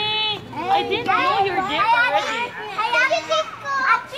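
Children's high voices calling out and chattering: a short held call at the start, then quick talk that seems to overlap.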